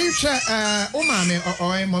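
A person's voice in a long, drawn-out exclamation "oh", held on a steady pitch in two long stretches, amid laughter.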